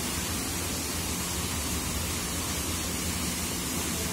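Steady rushing hiss of water spraying and falling from a water-park play tower into the pool, with an uneven low rumble beneath it.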